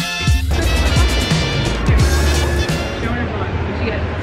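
Music that ends about half a second in, then a pressed-penny machine running, its gears and chain turning as it rolls a coin flat, with a steady low hum.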